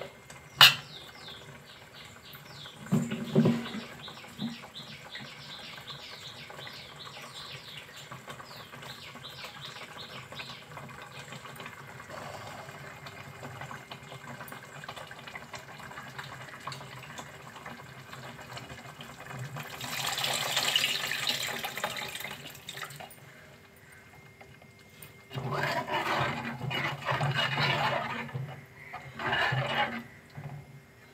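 Curry simmering in a large steel pot, with a sharp click about half a second in and a run of quick high chirps over the first ten seconds. Past the middle comes a few seconds of hissing, water-like noise. Near the end a steel ladle stirs through the curry and scrapes the pot in a few rough bursts.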